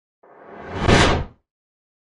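A single whoosh sound effect that swells up over about a second and then stops abruptly about a second and a half in.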